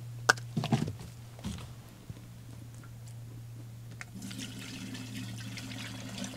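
A few clicks of plastic containers being handled, then, about four seconds in, water starts pouring from a plastic jug through a funnel into the emptied Bora-Care jug to rinse it. A steady low hum lies under it throughout.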